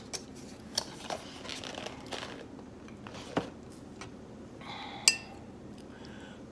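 A metal spoon clinking and scraping against a plate while scooping green beans: a few sharp clinks, the loudest about five seconds in, with soft eating sounds between.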